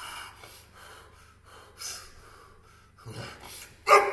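A strongman taking short, sharp breaths, about one a second, as he braces over a heavy log, then a sudden loud strained grunt near the end as he starts the pull.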